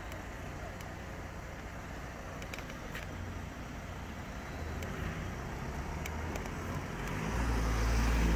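Low rumble of road traffic, a vehicle engine running close by, growing louder near the end, with a few faint clicks.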